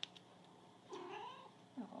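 A domestic cat meows once, a single call of just over half a second about a second in.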